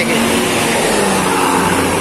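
Large coach bus passing close by at road speed, a steady rush of diesel engine and tyre noise.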